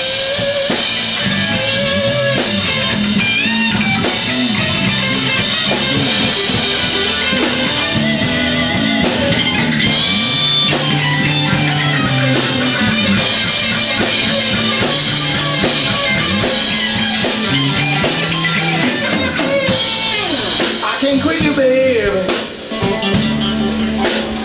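Live rock band playing an instrumental passage: an electric guitar plays a lead line with string bends over bass guitar and drum kit. The band briefly drops away near the end.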